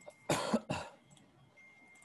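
A person coughing twice in quick succession, starting about a quarter second in.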